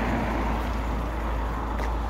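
Hyundai iX35's 1.7 diesel engine idling, a steady low rumble.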